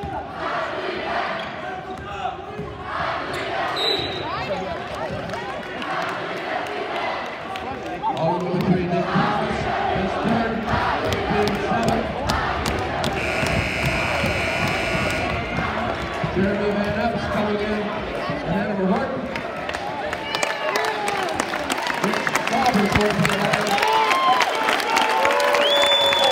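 Basketball dribbling on a hardwood gym floor under the chatter and shouts of a crowd, with sneaker squeaks, in a full gymnasium. A referee's whistle sounds for about two seconds near the middle.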